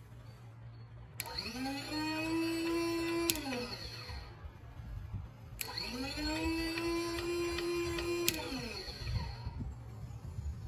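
Small electric motor on a homemade handheld tool, switched on with a click of its rocker switch, spinning up to a steady whine, then clicked off and winding down. It happens twice: about a second in and again at about five and a half seconds.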